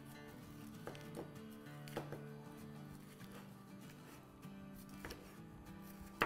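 Soft background music, with a few faint taps of a chef's knife striking a cutting board as a green bell pepper is sliced into strips.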